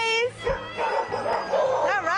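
Several dogs barking and yipping over splashing water as they run and jump into a swimming pool.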